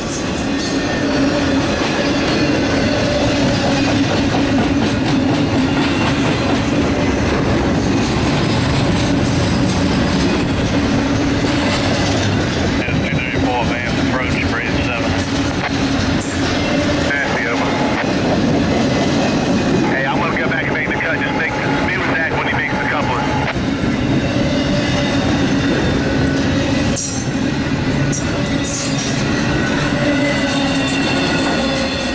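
Double-stack intermodal container train's well cars rolling past, steel wheels on rail making a steady, loud noise.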